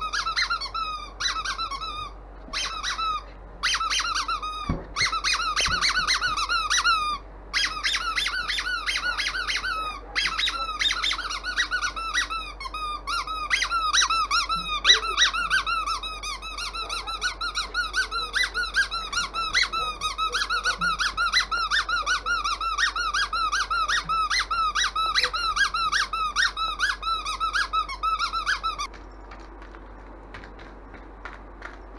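Squeaky dog toy squeezed over and over, several squeaks a second: short bursts at first, then a long unbroken run that stops abruptly near the end.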